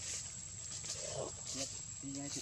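A macaque giving short, low calls: a brief rough sound about a second in, then a short pitched call.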